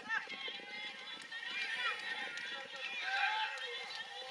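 Several indistinct voices calling out and talking at the trackside, overlapping one another, with the light footfalls of distance runners going past on the track.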